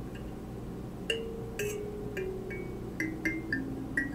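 Kalimba (thumb piano) being plucked: its metal tines ring out one note at a time. The notes start about a second in, come about two a second and step downward in pitch.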